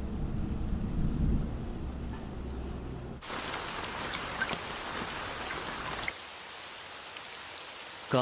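A low rumble, then heavy rain that starts suddenly about three seconds in and keeps falling steadily as a dense, even hiss.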